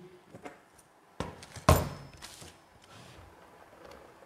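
An RC monster truck chassis being turned over and set down on a table: a knock a little past a second in, then a louder thud of the chassis landing half a second later, followed by faint handling clatter.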